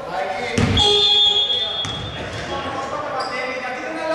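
Sounds of a basketball game in a large, echoing gym: a ball thumps on the hardwood about half a second in. Then a referee's whistle sounds as a steady high tone for about a second and a half, with players' voices around it.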